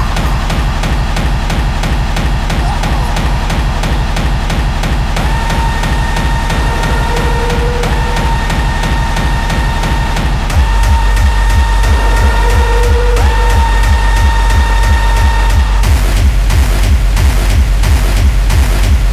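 Free-party tekno played live: a fast, driving kick-drum beat with a held synth lead line that comes in about a third of the way through. The bass hits harder just past halfway, and the lead line drops out near the end, leaving the beat and hats.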